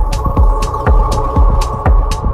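Progressive techno track: a four-on-the-floor kick drum at about two beats a second with off-beat hi-hats, and a sustained synth chord that swells in at the start.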